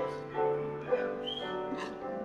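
Piano playing a slow introduction of sustained chords, each new chord struck and left to fade.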